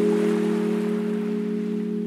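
Background music: a single sustained low chord held steady and slowly fading, with a faint hiss above it.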